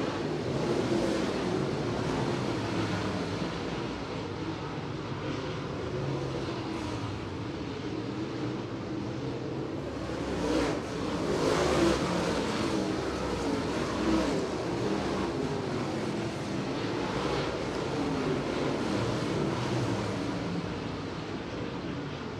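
A field of dirt late model race cars running around a dirt oval, their V8 engines rising and falling in pitch as they go through the turns. The sound swells for a moment a little past the middle as cars pass close by.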